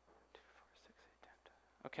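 Near silence: faint whispering and small scattered sounds from a quiet audience.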